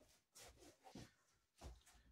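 Faint knocks and thuds of a freestanding wooden Wing Chun dummy being moved and set down on a mat floor, with a low thump near the end.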